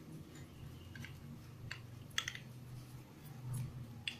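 A few light clicks and taps of plastic and metal parts as the wheel guard is fitted onto the head of an angle grinder, the loudest a double click a little after two seconds.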